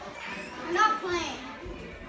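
A child's high-pitched voice in a short wordless utterance just under a second in, over light room noise.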